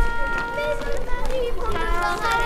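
Indistinct voices talking, no words clear, over a steady held musical note.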